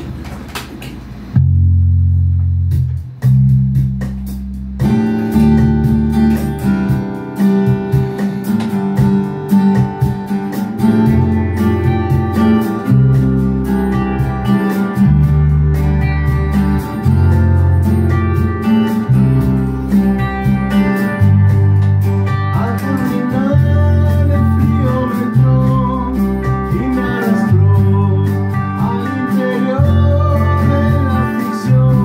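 Electric bass and electric guitars playing a rock song together. The bass comes in alone with a repeating line about a second in. The guitars join about five seconds in and play on over it.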